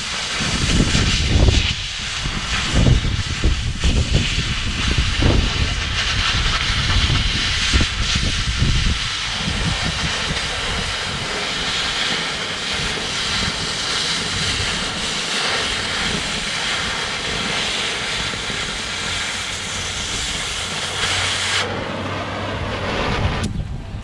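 Oxy-acetylene cutting torch hissing steadily as its cutting-oxygen jet burns through steel plate, with low rumbling during the first several seconds. The hiss cuts off near the end.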